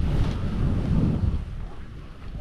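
Wind rumbling on the camera microphone as a skier goes down through deep powder, with a rush of snow under the skis; it dies down near the end.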